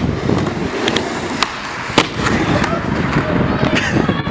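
Skateboard wheels rolling on a wooden mini ramp, broken by sharp clacks of the board striking the ramp, the loudest about two seconds in. The rider bails and the board clatters away without him.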